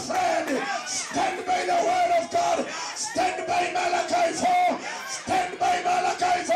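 A man's voice shouting through a microphone and loudspeakers in long, high-pitched held cries, broken every second or so, with crowd voices.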